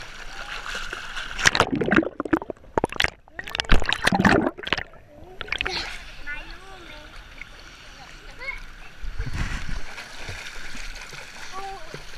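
Pool water splashing and churning close to the microphone as children swim and kick. There are loud splashes about a second and a half in and again around three to five seconds, and a weaker one near nine seconds.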